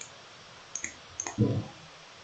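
A few faint computer mouse clicks, spaced irregularly, with a brief low vocal murmur about one and a half seconds in.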